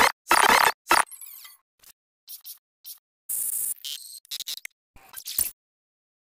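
A string of short, abrupt sound effects: four loud bursts within the first second, then scattered squeaky and clinking bits and another loud burst about three and a half seconds in, cutting off about half a second before the end.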